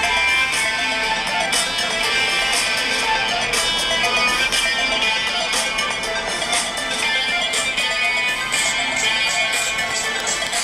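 Beat built from loops in the Music Maker Jam phone app playing continuously: a repeating beat with a guitar-like lead loop layered over it.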